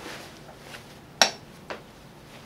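Cotton print fabric rustling as it is handled at a sewing machine, with a sharp click a little over a second in and a fainter click half a second later.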